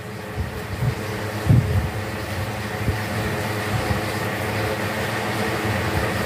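Several electric fans running together, a pedestal fan and two small LED-bladed desk fans, giving a steady motor hum and whir of spinning blades. A few soft low bumps come through, the clearest about a second and a half in.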